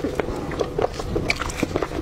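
Close-miked biting and chewing of braised pork hock: irregular smacking mouth clicks, several a second.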